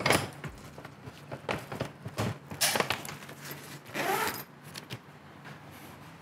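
Handling noise from a studio strobe on a light stand being adjusted with its octagonal softbox: a series of sharp clicks and knocks, the loudest right at the start and several more a couple of seconds in, with a short scrape about four seconds in.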